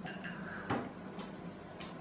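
A few faint clicks and ticks as an orange half is squeezed by hand over a small drinking glass, the clearest about a third of the way in.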